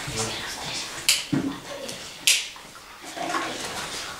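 Children's voices in a small room, in short stretches, with two brief hissing sounds about one and two seconds in.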